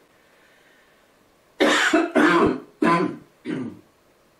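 A man coughing four times in quick succession, starting about a second and a half in.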